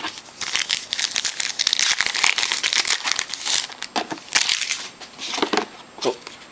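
Trading card pack wrapper crinkling and tearing as it is opened and handled. The crinkling runs for about three and a half seconds, then comes again briefly a little later.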